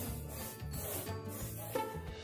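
Rubber balloons being rubbed against wool cloth to build up a static charge, heard under background music.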